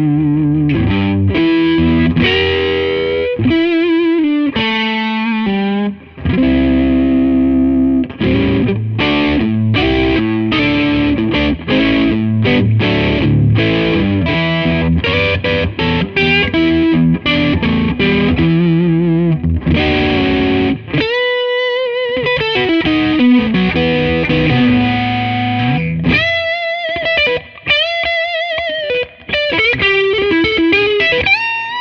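Gibson Memphis 50th Anniversary 1963 ES-335 TD semi-hollow electric guitar played solo through an amp with some overdrive, mixing chords and single-note lines. Near the end the playing turns to bent notes with wide vibrato.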